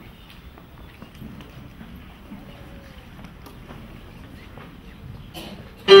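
Quiet room background with faint scattered clicks and rustles. Near the end a grand piano comes in suddenly with a loud opening chord that rings on.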